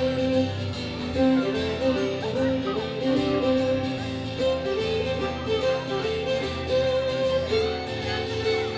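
Live acoustic guitar and fiddle playing an instrumental break in a country song: the fiddle carries a stepping melody of held notes over strummed guitar chords, with no singing.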